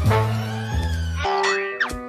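Cartoon background music, then a comic sound effect of sliding pitches, gliding up and down, over the last part.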